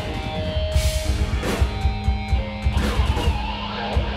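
Live rock band playing: electric guitar, bass guitar and drum kit, with cymbal crashes over a steady low-end pulse.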